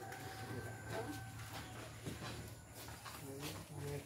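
Quiet outdoor background with a steady low hum and faint, distant voices near the end.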